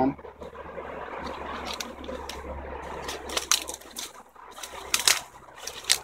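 A honey bee swarm buzzing steadily, with irregular crunches and rustles of footsteps and brushed branches in the undergrowth from about two seconds in, the loudest about halfway and near the end.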